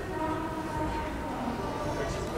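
Hall crowd noise with a few steady held tones over it, like sustained music or a horn-like note.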